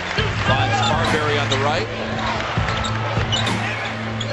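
Live college basketball game sound: a ball dribbling on a hardwood court, sneakers squeaking in short sliding chirps, and arena crowd voices, over a steady low hum.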